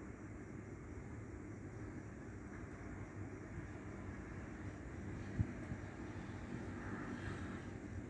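Faint, steady low rumble of outdoor background noise, with a single short knock about five seconds in.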